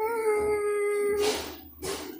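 A girl's voice holding one long, steady note for about a second and a half, followed by a short breathy noise.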